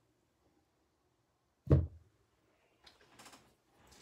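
A single sharp thump about two seconds in: a paint-covered canvas being set down flat on the table. Otherwise near quiet, with a few faint short sounds near the end.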